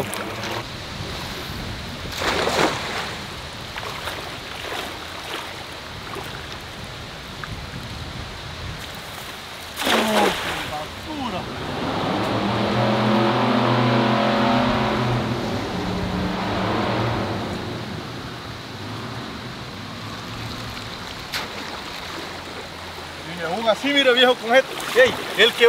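Splashing in shallow river water: a splash about two and a half seconds in, and a cast net hitting the water about ten seconds in. From about twelve to eighteen seconds an engine hum rises, peaks and fades away.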